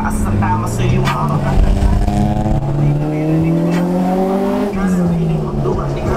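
1999 Honda Civic's engine heard from inside the cabin, its revs climbing steadily for about four seconds under acceleration, then dropping sharply near the end as the driver shifts or lifts off.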